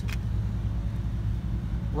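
A steady low background rumble with no speech, and a short click right at the start.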